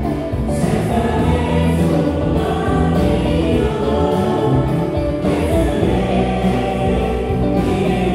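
Live worship band playing a hymn on electric guitar, bass guitar, keyboards and drums, with a group of voices singing together.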